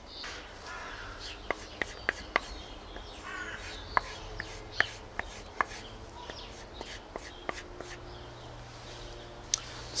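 A small whittling knife being stropped on a leather paddle strop loaded with green honing compound: quiet strokes of the blade along the leather with irregular light ticks as it is turned and set down at each pass.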